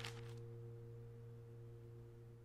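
Low steady hum with a few fainter, higher steady tones above it, slowly fading out. A few faint crackles in the first half-second.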